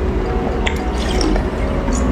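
Close-miked drinking of jelly water from a test tube: wet sipping and swallowing, with two sharp wet clicks, about two-thirds of a second in and near the end.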